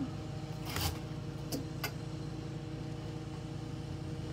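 A dress and its hanger being handled: a short rustle of fabric, then two light clicks as the hanger goes back onto the clothing rack, over a steady low hum.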